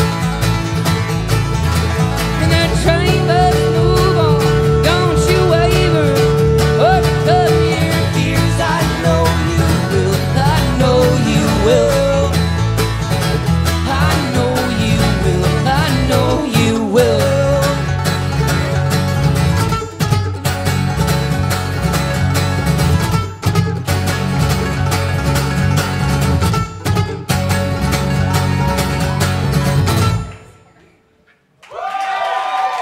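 Live bluegrass string band playing an instrumental passage: acoustic guitar and mandolin over a moving bass line, with a long held melody note early on and sliding notes later.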